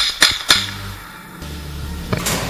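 Three quick shots from a semi-automatic rifle in the first half second, each sharp crack fading fast. A hip-hop backing track with a steady bass line runs underneath.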